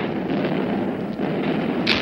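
Loud, steady rumbling noise, with a sharp crack near the end.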